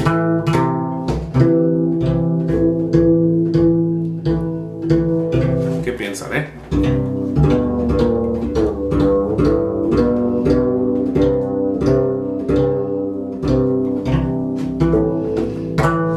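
Mexican guitarrón played in a steady repeated pattern of plucked notes, a few a second, the low notes ringing on beneath. The pattern changes about six seconds in.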